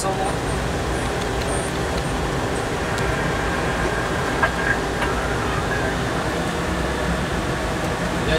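Steady machinery and ventilation hum inside a Rubis-class nuclear attack submarine's control room during a dive, with a few held tones over it. Two short clicks come about four and a half seconds in.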